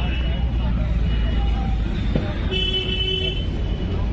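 Busy street traffic with a steady low rumble and people talking in the background. A vehicle horn honks briefly early on and again for under a second about two and a half seconds in.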